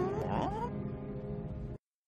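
Two short whining cries, the first dipping then rising in pitch and the second rising, over soft background music. All sound cuts off suddenly near the end.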